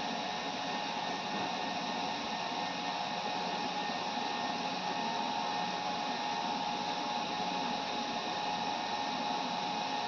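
HPE ProLiant DL380 Gen10 rack server's cooling fans running steadily while it boots through its power-on self-test: an even rushing of air with a faint steady whine mixed in.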